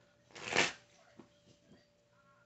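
Oracle card deck being shuffled: a short rustling swish of cards about half a second in, followed by a few faint clicks of cards.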